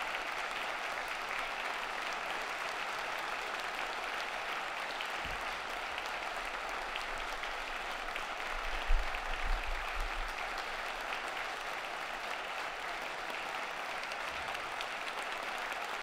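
Audience applause in a large hall, steady throughout, with a few low bumps, the loudest about nine seconds in.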